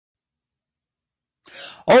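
Silence for most of the time. Then, about one and a half seconds in, a man makes a short breathy throat sound, and right after it his voice starts on the word "Oh".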